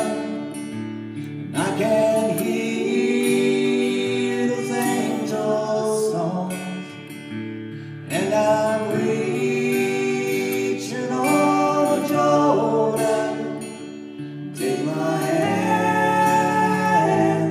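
A woman and a man singing a slow country-gospel song to acoustic guitar, in long held phrases that swell and fall back.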